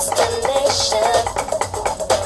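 Rapid drumstick strokes in a steady rhythm, played over recorded music with a sustained melody.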